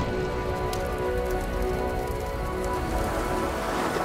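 Storm rain and wind, a steady dense rushing noise, with held music chords underneath.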